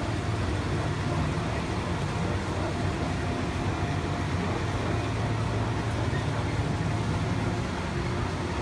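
Fairground swing carousel running: a steady low machine hum under a constant wash of noise.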